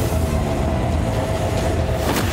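Cartoon energy-blast sound effect for a dragon-breath attack: a loud, continuous low rumble with a faint steady tone held over it.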